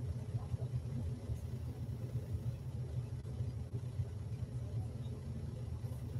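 Steady low rumble of room noise, without speech or music.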